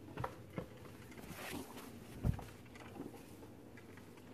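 Handling noise from a phone camera being swung about: a couple of soft knocks early on and one louder, low thump a little over two seconds in, with faint room noise between.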